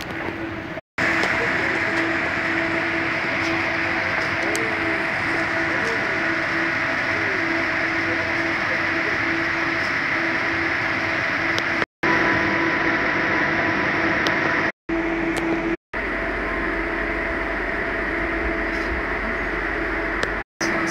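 Steady rail-station din with a constant hum and hiss, broken by a few brief dropouts. Near the end it turns into the steady low rumble and hum inside an airport express train carriage.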